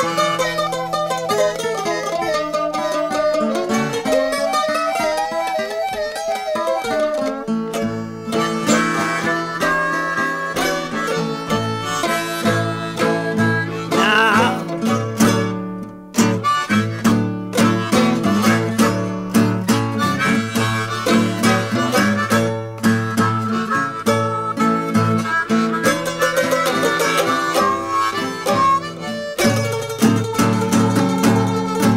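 Acoustic country blues band playing: a harmonica with bending, wavering notes over plucked acoustic guitar and mandolin.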